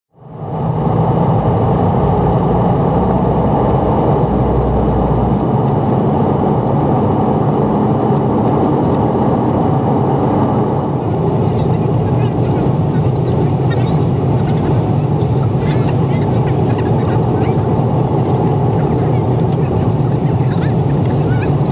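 Steady roar of jet engines and rushing air inside an airliner cabin, heard at a window seat. It fades in over the first second, and faint ticks and rattles sit on top in the second half.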